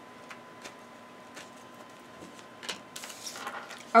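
Tarot cards being shuffled by hand: soft, scattered taps and flicks of the cards. A brief, slightly louder rustle comes near the end.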